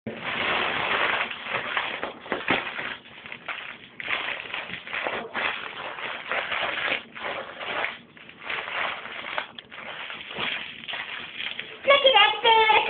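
Helium rushing out of the neck of a foil balloon as it is sucked in through the mouth, in repeated hissing draws of about a second each. The foil crinkles in the hands now and then.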